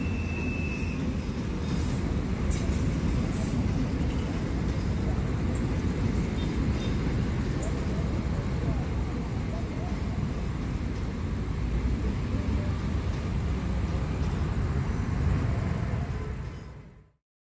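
Coaches of the Argo Cheribon passenger train rolling past, a steady rumble of wheels on rail with a few short high ticks in the first half.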